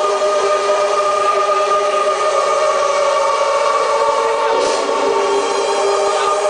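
Electronic dance music played loud over a large PA system: a held synthesizer chord, steady and without a beat.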